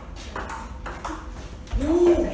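Table tennis rally: a celluloid ball clicking off paddles and bouncing on the table, a sharp tick about every half second. Near the end a person's voice cries out loudly, the loudest sound here.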